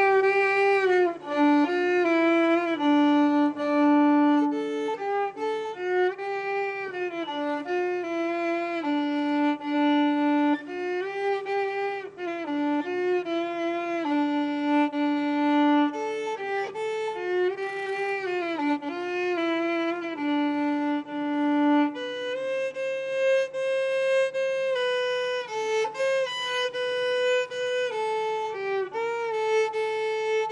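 Solo violin played by a young girl: a bowed melody of mostly held notes with slides between pitches, climbing to a higher register about two-thirds of the way through.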